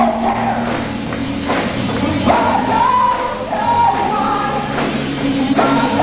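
A three-piece rock band playing live: electric guitar, electric bass and drum kit, with held, sliding melody notes on top.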